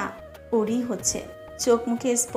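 A voice narrating in Bengali over soft background music.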